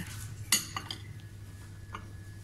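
A small glazed ceramic plate is set back down onto a stack of plates, with one sharp clink about half a second in and a few lighter clinks after it.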